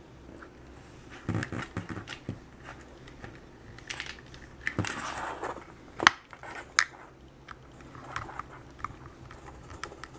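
Hand assembly of a small 3D-printed plastic robot chassis and micro servo with a tiny Phillips screwdriver: scattered light clicks, taps and rustles of plastic parts and wires, with a sharp click about six seconds in and another just after.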